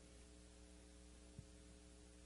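Near silence with a faint, steady electrical mains hum, and one faint tick about two-thirds of the way through.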